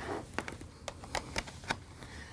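About five light, sharp clicks at uneven intervals: hands fumbling with a USB cable and its plug at a laptop.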